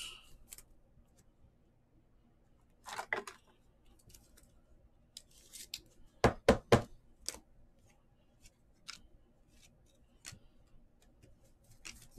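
Light clicks and taps of trading cards and hard plastic card holders being handled on a tabletop, including a quick run of three sharp clicks about six and a half seconds in.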